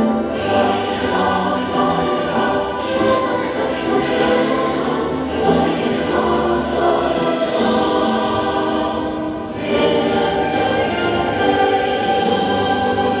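A choir singing a hymn in long held phrases, with accompaniment. The singing eases off briefly about nine and a half seconds in, then swells again.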